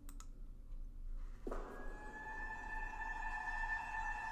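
Opening of a film trailer's music: a sustained tone comes in suddenly about one and a half seconds in and holds steady over a low hum, after a couple of faint clicks at the start.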